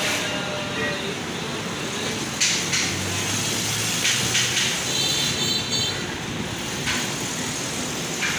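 Steady background noise, like a busy shop or street, with a few short sharp knocks and faint voices.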